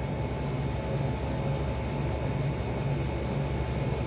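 A pastel rubbed back and forth across paper on an easel board, a steady scratchy scrubbing in repeated strokes as a background is coloured in.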